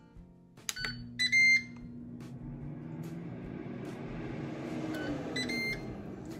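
A Ninja air fryer beeps once loudly as it starts. Its fan then runs with a steady hum and a rush of air that slowly grows louder. Near the end come a few short beeps while the fan's hum drops in pitch.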